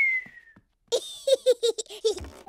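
A whistled note gliding down in pitch, ending about half a second in; then, from about a second in, a small child's giggle, a quick run of short high laughs.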